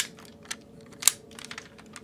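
Spring-loaded smokestacks on a Masterpiece Optimus Prime toy being flicked forward and snapping back, making a few sharp clicks, the loudest about a second in.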